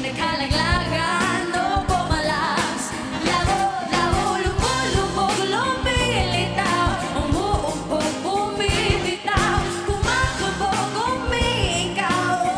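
Live pop band performance with a female lead singer belting wavering vocal runs over a steady drum beat and pitched band parts.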